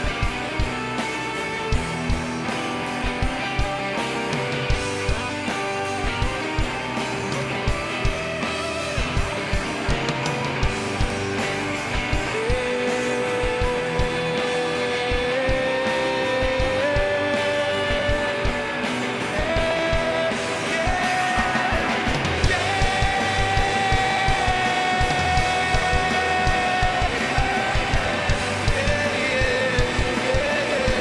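Live rock band playing an instrumental passage: a steady drum-kit beat under electric guitar. From about halfway, long held lead notes climb step by step and the music grows louder.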